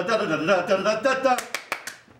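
A man's voice chanting a wordless 'da da da' dance tune, then a quick run of about five sharp claps in the second half.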